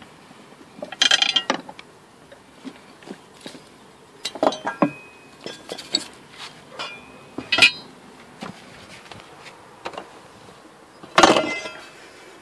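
Metal rear-seat hardware of a Volvo V70 (seat-belt buckles, latches and seat frame) clinking and clattering as it is handled, in about five separate bursts, the loudest near the end.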